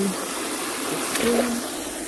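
Water gushing during the clean-out of a gold highbanker, swelling and then easing off near the end.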